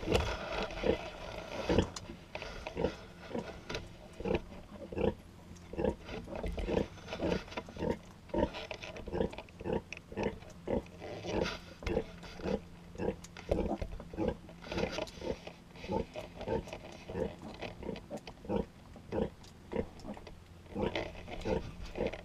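Nursing sow grunting in a steady rhythm, about two short low grunts a second, while her piglets suckle. Piglets squeal briefly near the start and now and then.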